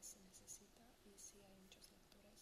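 Faint, hushed speech between two women sitting close together, low enough that its hissing 's' sounds stand out.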